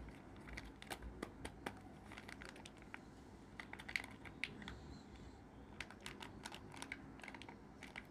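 Faint, irregular clicks, taps and light crinkles of a plastic Kinder Joy egg's two halves and foil seal being handled in the fingers.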